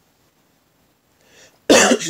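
A man coughs once, sharply, to clear his throat near the end, after about a second and a half of quiet.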